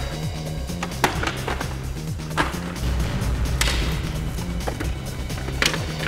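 Wooden crate lids knocking a few times as they are lifted and let fall, with sharp wooden knocks about a second in, midway and near the end. Tense background score with a low pulsing bass runs underneath.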